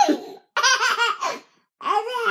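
A baby laughing in a quick run of high-pitched bursts, with a man laughing along. There is a short gap near the end.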